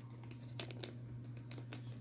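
Faint crinkling and a few light clicks as hands handle ring-size adjusters and a ring, over a low steady hum.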